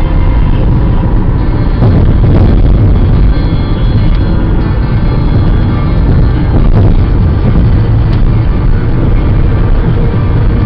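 Inside a car cruising on a freeway: a steady low rumble of road and engine noise, with music playing faintly over it.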